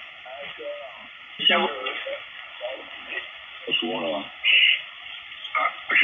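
CB radio reception through a DSP SDR receiver's speaker on the 11-metre band in upper sideband: steady static with faint, broken fragments of distant operators' voices as the receiver is tuned from one channel to the next. The audio is narrow, with no top end above a thin band.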